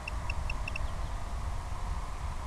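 A steady low rumble of wind on an outdoor microphone. In the first second a quick run of about six short, high-pitched electronic beeps cuts through it.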